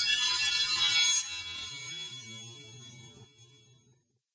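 Animated logo intro sting: a bright, high-pitched sound effect that swells to a peak, drops off sharply about a second in, and fades away near the end.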